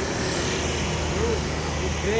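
A motor vehicle engine idling steadily.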